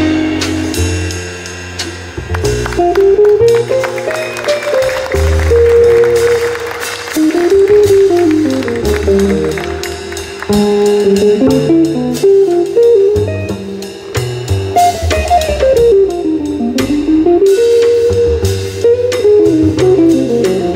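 Live jazz combo: a semi-hollow electric guitar plays a single-note improvised solo line over double bass and a drum kit with cymbals, the volume swelling and dipping phrase by phrase.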